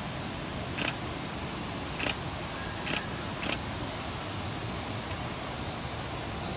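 Four short, sharp clicks at uneven intervals in the first half, over a steady background hiss.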